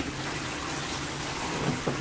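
Water spraying steadily from a handheld shower head onto a dog being bathed.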